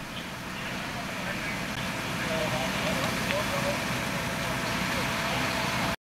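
Fire engines' motors running steadily at a fire scene, with faint voices of people talking in the background.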